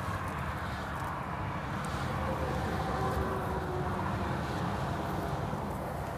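Steady low rumble of motor vehicles, with no single event standing out.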